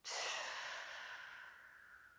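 A woman's long, audible sighing exhale through the mouth, loudest at the start and fading away gradually. It is a deliberate sigh-it-out breath released after a deep inhale, as a yoga breathing cue.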